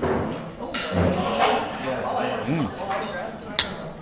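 Cutlery clinking on a breakfast plate, with one sharp clink near the end, and a man's appreciative "mm" while eating.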